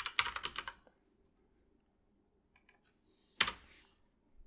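Typing on a computer keyboard: a quick run of keystrokes in the first second, a few light taps near the middle, then one louder tap about three and a half seconds in.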